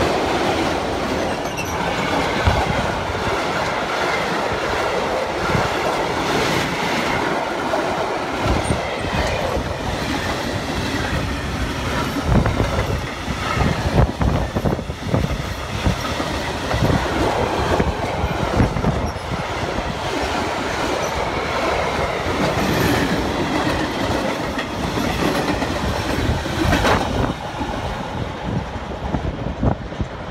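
Long freight train of car-carrier and empty flat wagons rolling past close by, the wheels clattering over rail joints in a continuous clickety-clack. The noise eases off near the end as the last wagons pull away.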